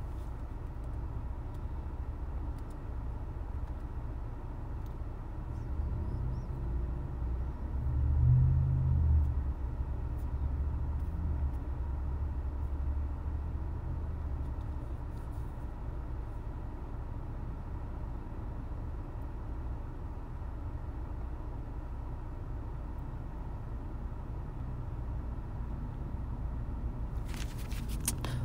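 Low, steady background rumble that swells for a few seconds about eight seconds in.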